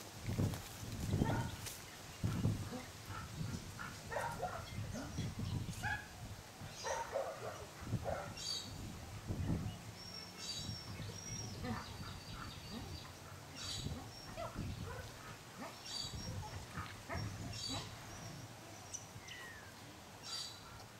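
Scattered short, high-pitched bird chirps and calls, one a falling whistle near the end, over irregular low rumbling.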